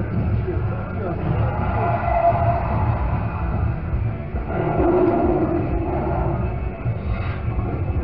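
Loud fairground din: music with a heavy bass from a ride's sound system, with voices over it.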